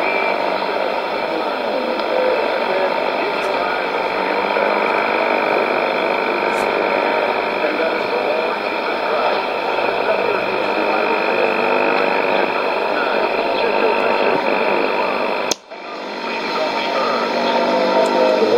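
Weak shortwave AM broadcast on 4840 kHz heard from a Sony ICF-2001D receiver: a man's speech barely readable under heavy static and noise, with a faint steady whistle. Near the end the audio cuts out for a moment as the receiver is retuned from 4840.2 to 4840.0 kHz, then the noisy signal returns.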